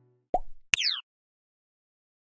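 Short sound effects of a logo sting: a pop about a third of a second in, then a click with a quick falling electronic tone just after, over by about a second in.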